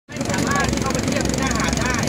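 Boat engine running steadily, with indistinct voices of people talking over it.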